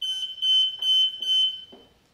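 Hill-Rom Centrella Smart+ hospital bed's bed exit alarm sounding: a high electronic tone that pulses rapidly. It is triggered because the patient has changed position with the 'changes position' mode set.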